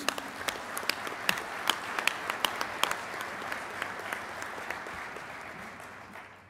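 Audience applauding, many hands clapping at once; the clapping dies away near the end.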